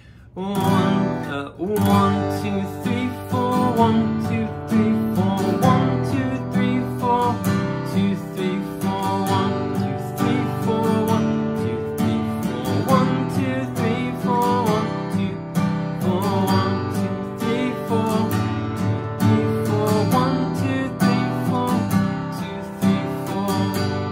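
Acoustic guitar strummed steadily through the G, D/F#, Em, C chord progression in down strums, with an added extra strum after each fourth down strum.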